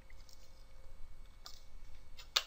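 A few faint clicks over a low, steady hum.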